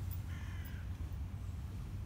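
A single bird call, about half a second long, comes a third of a second in, over a steady low rumble.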